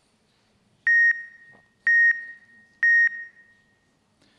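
Three short, identical electronic beeps about a second apart, played over the hall's sound system, each trailing off briefly: the countdown signal that opens the timed three-minute talk.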